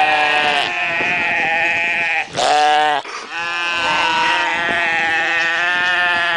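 Mouflon bleating loudly at close range: long, drawn-out calls, with a short one in the middle, about three bleats in all.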